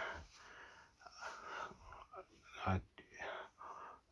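A man's voice at low level between sentences: breaths and half-whispered, mumbled sounds, with one short voiced sound near the end.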